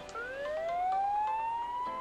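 A siren winding up: one tone starting a moment in and rising steadily in pitch, still climbing slowly at the end.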